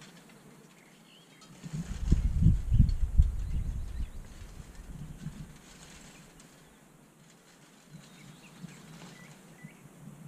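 Wind buffeting the microphone in a low, gusty rumble from about two seconds in to four seconds, with weaker gusts later. Faint bird chirps sound throughout.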